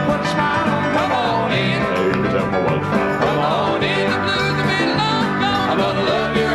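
Country band music at full level: drums, guitars and piano playing an upbeat song, with voices singing over it.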